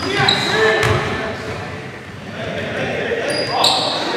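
Live pickup-style basketball game sound in an echoing gym: the ball bouncing, short high sneaker squeaks on the hardwood near the start and again near the end, and players' indistinct shouts.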